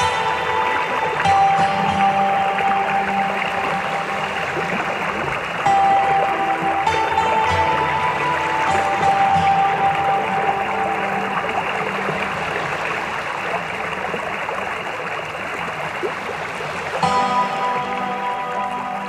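Slow, calm instrumental music with long held notes that change every few seconds, over a steady hiss underneath.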